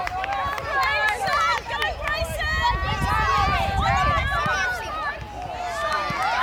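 Several spectators and young players shouting and calling out at once, many raised voices overlapping, as play runs toward the goal.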